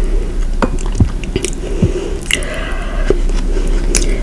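Close-miked wet mouth sounds: chewing with lip smacks and small clicks, and a couple of soft low thuds about one and two seconds in.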